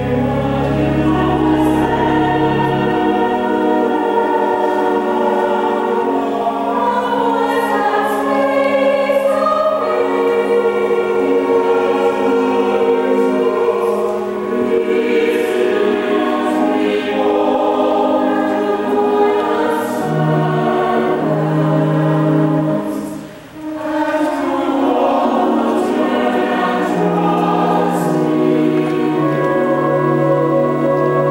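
Mixed choir singing. A low held note sounds under the first few seconds, and the singing breaks off briefly about three-quarters of the way through before resuming.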